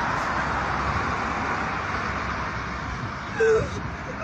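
Steady outdoor road-traffic noise picked up by a phone microphone, with a short voice sound about three and a half seconds in.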